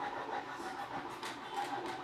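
Faint rustling of a sheer silk dupatta as it is lifted and spread out by hand, with a few soft swishes in the middle and near the end, over a low steady hum.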